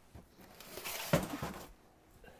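Soft rustling and handling noise for about a second, with a light knock in the middle of it, as someone moves about and handles things at a kitchen counter.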